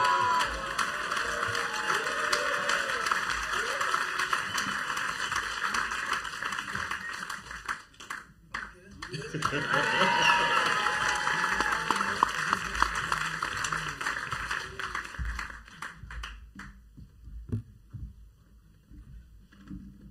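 Audience applauding, with voices calling out over the clapping; the applause thins out and dies away in the last few seconds.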